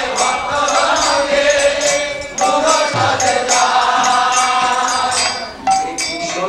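A devotional bhajan chanted to a melody, with a steady percussion beat keeping time.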